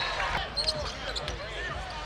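Basketball game sound from the court: a ball bouncing on a hardwood floor and short squeaks of sneakers, over the murmur of an arena crowd.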